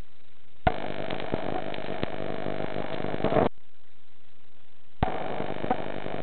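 A diver's breathing apparatus underwater, with exhaled air rushing out in two bursts. The first starts suddenly less than a second in and cuts off about three and a half seconds in. The second starts about five seconds in.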